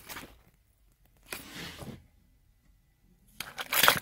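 Close handling noise at the console trim: two short bursts of rustling and scraping, a softer one under two seconds in and a louder one near the end. A faint steady low hum starts with the second burst.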